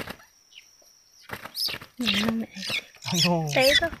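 A small bird caught under a woven bamboo basket trap gives high, squeaky calls from about a second in, mixed with people talking.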